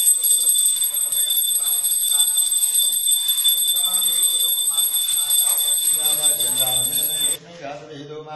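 Small hand bell of the kind used in puja, rung without pause: a steady, high-pitched ringing over a man's faint chanting. It cuts off abruptly near the end.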